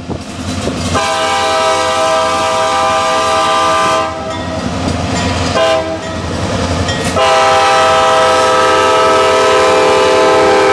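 Diesel locomotive air horn with several notes sounding together, blown for the road crossing in a series of blasts: a long one, a fainter stretch and a short one, then a long held blast from about seven seconds in. The low rumble of the passing diesel locomotives runs underneath.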